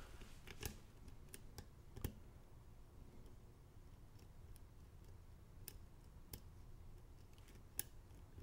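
Faint, scattered metallic clicks of a hook pick lifting pins in a pin-tumbler lock cylinder under light tension-wrench pressure. A click near the end is pin 2 setting, which puts the lock into a false set.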